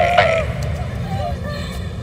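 Young women laughing in high-pitched voices: a quick run of laughs that ends about half a second in, followed by softer giggles and voice sounds.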